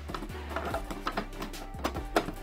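Quiet background music, with faint plastic clicks and handling as a brush-roll cover is pressed onto a cordless upright vacuum cleaner's head.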